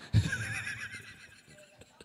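A man laughing close to a handheld microphone: a sudden burst just after the start that fades away over about a second and a half.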